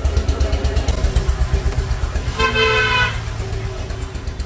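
A vehicle horn sounds once, steady, for just under a second about two and a half seconds in, over a low, rapid throbbing that runs throughout.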